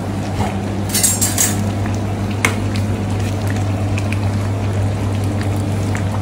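Curry gravy being ladled and spooned over rice on wrapping paper, with crackly paper-and-plastic crinkling about a second in, over a steady low hum.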